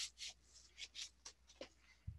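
Faint, scattered rustles and scrapes of paper and cardboard as a stiff 'do not bend' mailer envelope is opened and its contents slid out.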